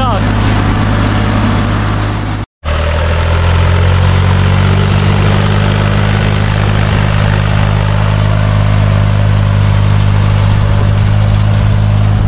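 International 383 tractor's diesel engine running steadily under load while pulling a rotary hay tedder. A short break about two and a half seconds in, after which the engine note rises a little and then holds steady.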